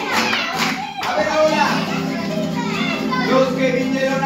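Several children's voices calling out together, over an acoustic guitar playing steadily underneath.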